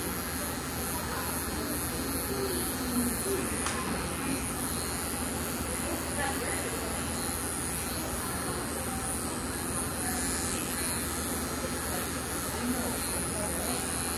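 Electric pet grooming clippers with a 10 blade running steadily as they are drawn through a Scottish Terrier's head coat.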